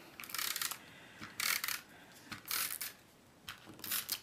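Handheld adhesive tape runner drawn along a strip of designer paper in four short strokes about a second apart, laying down adhesive.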